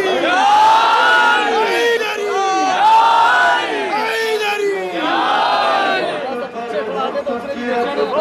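A crowd of men chanting a noha together, led by a man singing into a microphone, in drawn-out rising and falling phrases. The chanting thins out and grows more ragged near the end.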